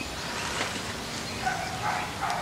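Steady outdoor background noise with a few faint, short animal calls, the clearest about one and a half seconds in.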